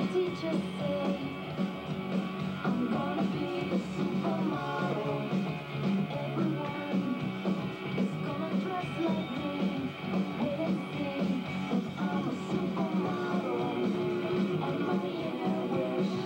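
Recorded rock and roll song with guitar, played back for a lip-sync dance routine.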